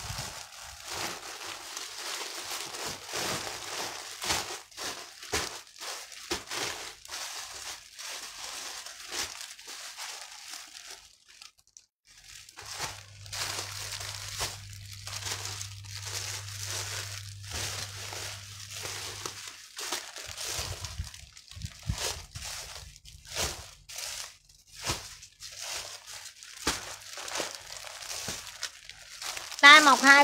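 Plastic packaging crinkling and rustling in irregular bursts as a bundle of clothes is handled and opened. A low steady hum joins for about seven seconds midway.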